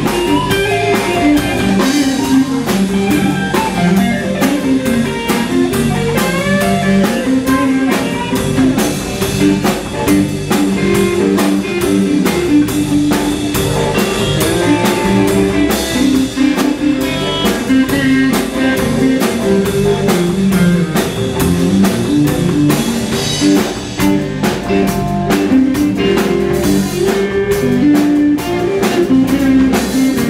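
Live electric blues band playing an instrumental passage: electric guitars and a drum kit with steady cymbal strokes, and a guitar lead line with bent notes.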